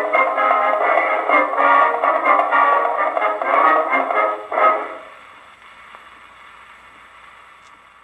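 Acoustic 78 rpm record of a military band march played through a disc graphophone's metal horn: thin-sounding band music with no bass plays the last bars and ends on a sharp final chord about four and a half seconds in. After the chord only the record's faint surface hiss continues.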